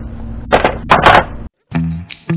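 Two loud bursts of handling noise, about half a second apart. After a brief drop to silence, background guitar music with a steady beat begins.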